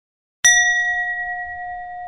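A single bell-like ding, struck about half a second in, that rings on with a slow fade: an intro chime sound effect.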